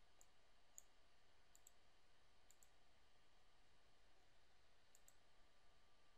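Near silence with several faint computer mouse clicks, some in quick pairs, over low room hiss.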